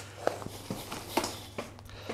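Maxi-Cosi Leona 2 compact stroller being unfolded: a series of short clicks and knocks from its frame joints and latches as it opens out, about five in two seconds.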